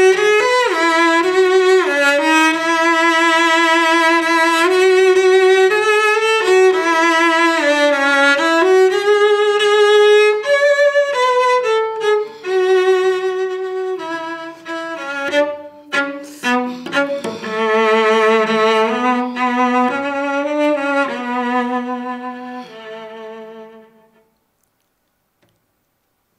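Solo cello, a 1730 Carlo Tononi instrument, bowed in a slow, lyrical melody with vibrato, the delicate opening of a theme. A run of short detached notes comes in the middle, and the line softens and dies away about two seconds before the end.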